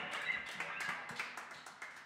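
An electric guitar chord rings out and fades away, with a few light taps over the dying sound.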